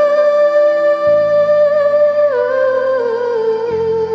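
A woman's voice holding one long wordless sung note into a handheld microphone, with a slight vibrato, gliding down a step about two seconds in and again near the end. Under it a karaoke backing track plays sustained chords.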